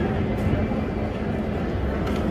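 Steady low rumble of city street noise with indistinct voices mixed in.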